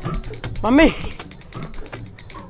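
A man's voice calling out "Mummy!" once, drawn out and rising then falling in pitch, over quiet background music.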